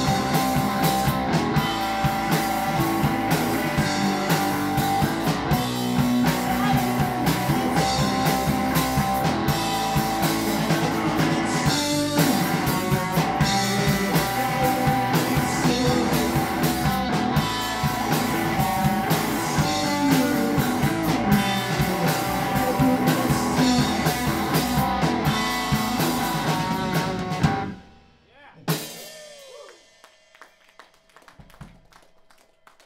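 Small rock band playing loudly: electric guitar, electric bass and a drum kit. The song stops suddenly about 27 seconds in, and one last hit rings out briefly just after.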